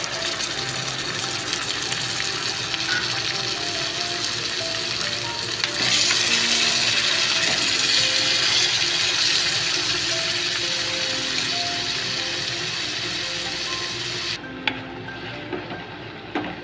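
Tomatoes sizzling in hot oil with fried onions in a kadhai, a steady crackling frying sound that grows louder and brighter about six seconds in as the mixture is stirred, then cuts off abruptly near the end.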